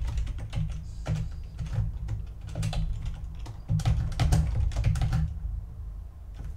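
Typing on a computer keyboard: quick runs of keystrokes that stop about five seconds in.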